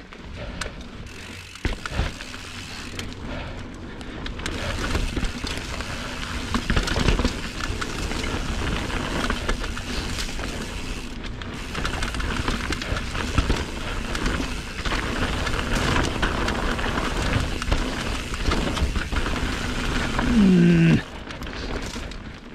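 A Yeti mountain bike rolling fast down a dirt singletrack: a steady rush of tyres on dirt and leaves and wind on the microphone, with constant small clatters and knocks from the bike over roots and bumps. About a second and a half before the end comes a brief, loud pitched sound that falls in pitch.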